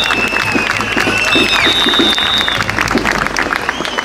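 Crowd applauding in a round of applause, with dense, even clapping and some long, steady high tones held over it.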